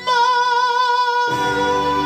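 A man singing a gospel song at an electronic keyboard: he holds a high note with vibrato, then the keyboard's chords and bass come in about a second in.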